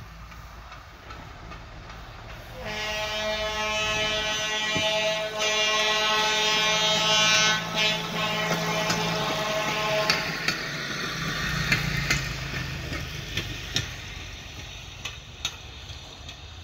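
A rail vehicle's horn sounds a long, steady-pitched blast of about seven seconds, with two short breaks, starting a few seconds in. After it stops, a small rail vehicle's engine rumbles as it moves off, with sharp clicks of wheels over rail joints.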